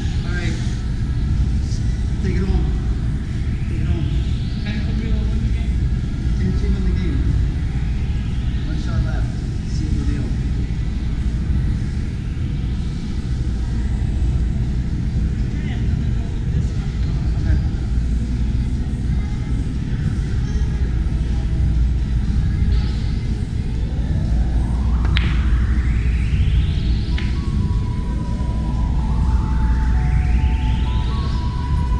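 Busy game-room background noise: a steady low rumble with indistinct voices and music, and rising electronic sweeps that repeat several times, the last two close together near the end. Late on there is one sharp click, as of a pool cue striking the cue ball.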